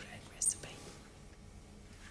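A woman's soft whispered words, one short hissing sound about half a second in, then quiet room tone.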